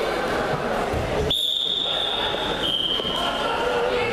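A referee's whistle blown in one long, steady blast of about two and a half seconds, starting about a second in and dropping slightly in pitch partway through, stopping the wrestling bout. Crowd chatter continues underneath.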